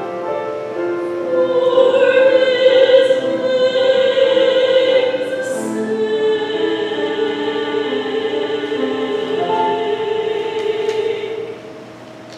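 Church choir singing an anthem in long held notes, with piano accompaniment; the sung phrase ends shortly before the end.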